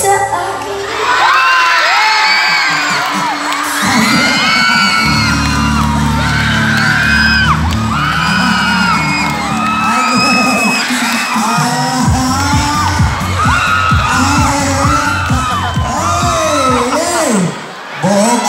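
Music played loud over a PA system, with the crowd shrieking and whooping over it throughout; a steady beat comes in about twelve seconds in.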